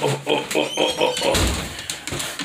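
A man's voice talking, with a short low rumble of the handheld phone being moved about a second and a half in.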